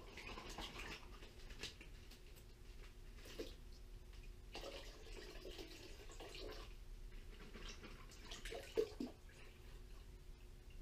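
Hands working wet paydirt through a stainless mesh strainer over a plastic gold pan: irregular gravelly scraping and water sloshing, with a sharp knock of the strainer against the pan just before the end.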